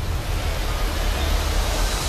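Film trailer sound design: a low rumble under a hiss of noise that swells steadily toward the end, a riser leading into the music.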